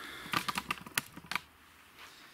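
A quick run of about ten light clicks and taps within about a second, from gloved hands handling the carburettor's removed float bowl and small parts.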